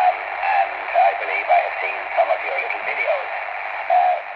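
A distant amateur radio operator's voice received on the 20-metre band through the Discovery TX-500 transceiver's speaker. The speech sounds thin and band-limited over a steady hiss of band noise.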